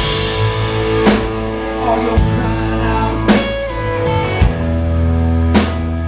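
Live blues band playing: electric guitar and electric bass over a drum kit, with sharp drum hits about a second, three seconds and five and a half seconds in.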